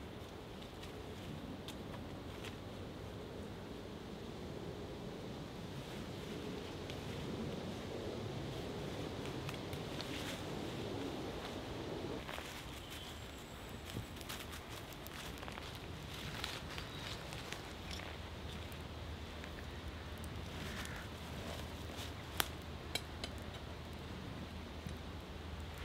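Faint, steady outdoor background with a few light clicks and rustles, the sharpest of them near the end.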